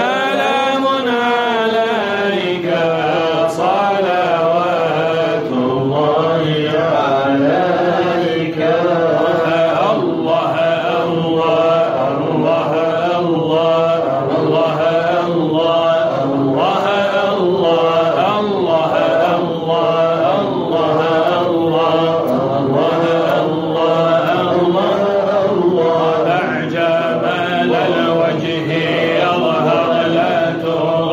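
A group of voices chanting an Arabic Sufi devotional poem together. The voices hold a steady, pulsing melody with no break.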